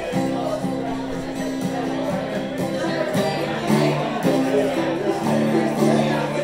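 Live acoustic music: a steel-string acoustic guitar played under long held melody notes that step from pitch to pitch.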